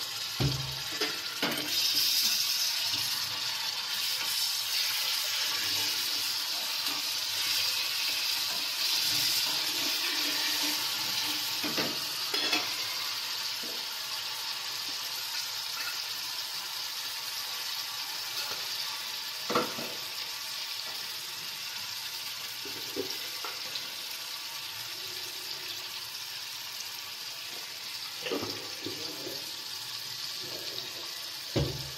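Sliced onions frying in hot oil in a steel kadai: a steady sizzle, louder for the first ten seconds or so and then easing a little. A few short clicks now and then.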